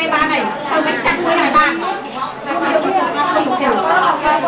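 Speech: a woman talking into a microphone over the chatter of other voices in a crowded room.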